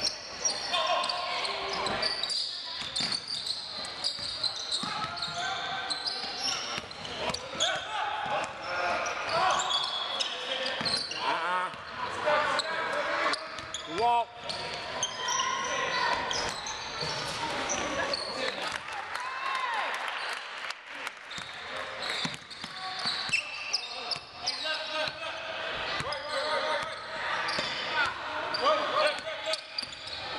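A basketball being dribbled on a hardwood gym floor during a game, with players' and spectators' indistinct shouts and chatter throughout.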